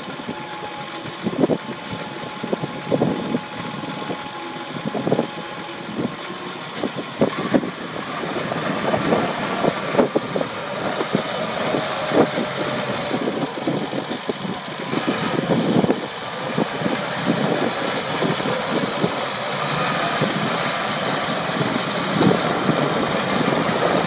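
Caterpillar D6C crawler dozer's diesel engine running as the machine drives and turns, with irregular clanking from its steel tracks. It gets louder from about eight seconds in.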